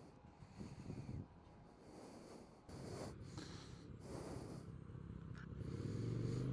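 Kawasaki VN800's V-twin engine running, faint and muffled at first, then louder and more pulsing from about three seconds in as the bike pulls away.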